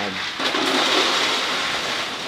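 A man's long breathy exhale as he laughs: a steady, unpitched hiss lasting about two seconds that fades near the end.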